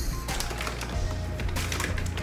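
Background music with a steady bass, over light, rapid clicking and crackling from hands tearing processed cheese slices into small pieces, in two short clusters.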